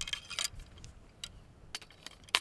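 Faint, scattered metallic clicks and clinks: shotgun shells being handled and loaded into a brass-framed Henry Axe lever-action shotgun.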